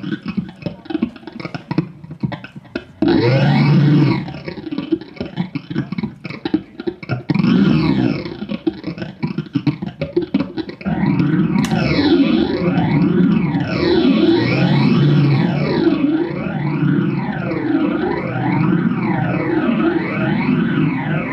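Live electronic music run through effects and distortion. It is choppy and stop-start at first. From about halfway through it settles into a steady layer of tones that sweep up and down about once a second.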